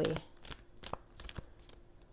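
Tarot cards being handled: a few soft clicks and rustles of card stock.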